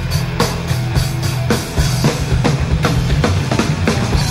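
Live rock band playing an instrumental passage without vocals: a drum kit hit hard on a steady beat, with bass drum and snare to the fore, over bass and electric guitar.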